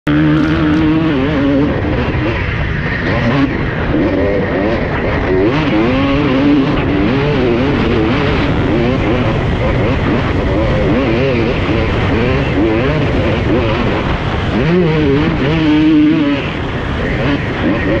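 2006 Honda CR250 two-stroke 250 cc motocross engine heard from on board, revving hard, its pitch rising and falling over and over as the bike is ridden through sand holes.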